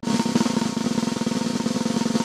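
Snare drum played in a fast, even roll, the strokes running together into a continuous rattle from the metal snare wires beneath the drum. It begins abruptly.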